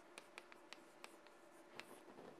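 Faint handwriting: irregular light taps and scratches of a writing tool as a short calculation is worked out, over a faint steady hum.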